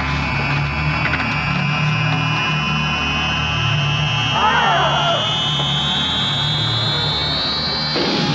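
Film-score tension build: a high electronic whine climbs slowly in pitch over a steady low drone. About halfway through comes a short strained cry.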